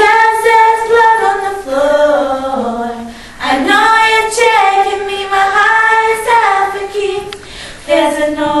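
Two girls singing a pop song without accompaniment, their sung lines rising and falling in pitch, with a short break in the singing about three seconds in.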